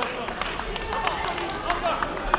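Indistinct talk and chatter from people in a large sports hall, with a few sharp clicks scattered through it.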